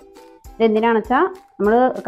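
A voice over background music, with a few short held musical notes in the first half-second.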